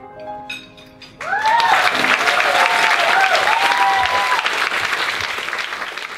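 The last notes of the song's accompaniment fade out. About a second in, an audience breaks into loud applause with cheering whoops over the clapping, easing off near the end.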